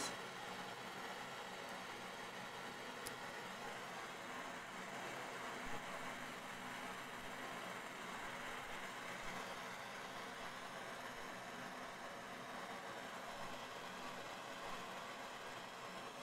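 MAP-gas hand torch burning with a steady, even hiss.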